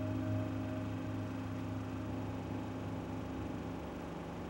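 The last chord of an acoustic guitar ringing out and fading, its higher tones dying first, over a steady low hum.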